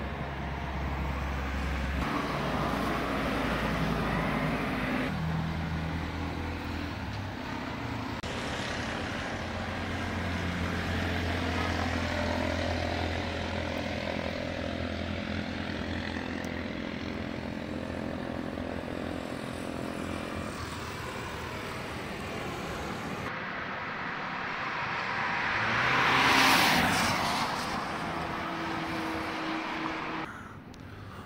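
Road traffic on a wet road: a steady engine hum from vehicles that changes abruptly a few times, and near the end a car passing with a swell of tyre hiss on the wet surface.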